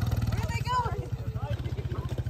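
Side-by-side UTV engine running steadily with a low, even pulse. Voices call out briefly in the middle.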